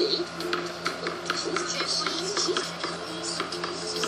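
Music from a children's TV programme playing through a television: a tune of held notes with light percussive clicks.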